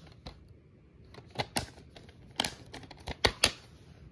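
Plastic DVD keep case being handled and opened: a run of sharp plastic clicks and snaps, the loudest two near the end.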